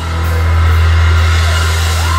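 Live rock band holding one loud, steady low bass note under a bright hissing wash, between sung lines.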